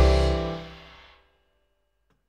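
Jazz piano trio (Roland RD-300 stage piano, double bass and drums) hitting a closing chord together, the chord and a cymbal wash dying away over about a second: the end of the tune.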